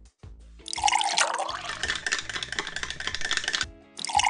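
Milk pouring from a carton into a glass of Milo chocolate-malt powder: a steady splashing stream starting under a second in and stopping shortly before the end, with background music.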